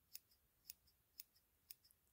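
Small scissors snipping into the fur of a miniature toy dog: four faint snips about half a second apart.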